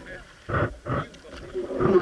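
A man's loud voice in three short bursts, about half a second in, about a second in and near the end; the words are not English.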